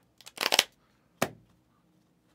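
Trading-card supplies (plastic top loaders and cards) handled close to the microphone: a short rustling scrape about half a second in, then one sharp click a little after one second.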